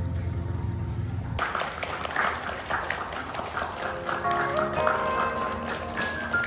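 Background music with plucked strings that cuts off about a second and a half in to live music from a performance in a large hall: held, stepped melody notes, likely a woman singing, over echoing room and audience noise.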